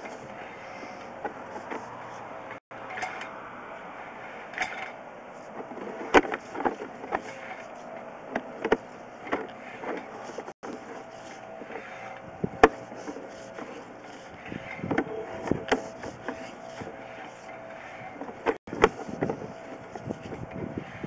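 Sewer inspection camera and its push cable being pulled back through the drain pipe: irregular clicks and knocks over a steady equipment hum.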